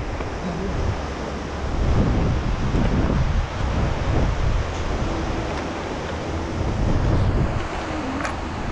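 Wind blowing on the microphone: a steady rushing rumble with no pitch, swelling and easing.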